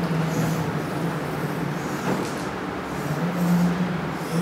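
Steady low hum of room noise, with a few short scraping strokes of chalk on a blackboard as lines are drawn.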